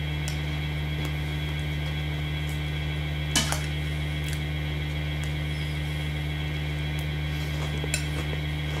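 Light clinks of cutlery on a plate during a meal, a few scattered ones with the sharpest about three and a half seconds in, over a steady electrical hum.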